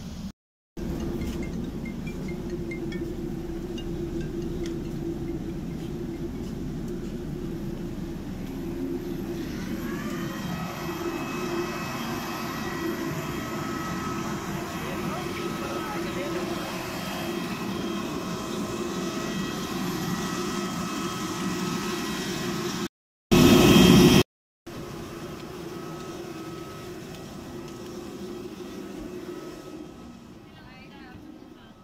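Steady low rumble; about ten seconds in, a jet airliner's steady high multi-toned whine fades in on top of it and continues. A brief, much louder burst of noise cuts in a little before the end.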